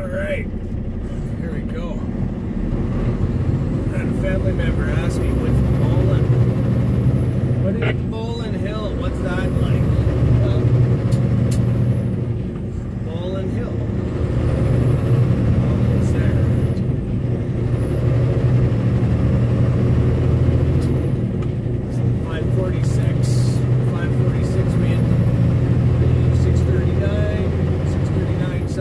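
Heavy truck's diesel engine heard from inside the cab while driving, a steady low drone that eases off and builds again a few times.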